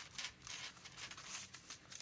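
Faint rustling and light taps of paper and card being handled and tucked into a journal, in short irregular bits.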